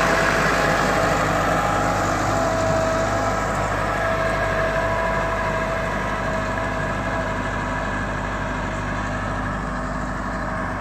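Massey Ferguson 385 tractor's diesel engine running steadily as it pulls a laser land-leveler bucket across the field, slowly growing fainter as the tractor moves away.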